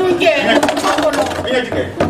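A person talking in Malinke, with a few sharp clicks or knocks around the middle.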